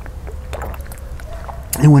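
A man drinking from a plastic water bottle: faint sips and swallows over a low steady outdoor background, then speech begins near the end.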